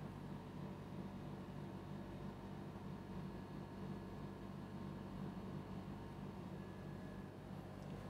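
Faint, steady room hum with a low electrical-sounding drone and no distinct events: the background tone of a small room.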